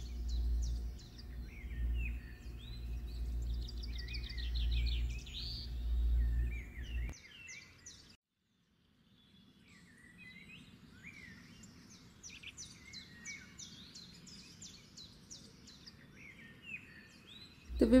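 A fork beating raw eggs in a ceramic plate over a steady low hum, with birds chirping in the background. After a brief silence a little past the middle, only faint bird chirps and low room noise remain.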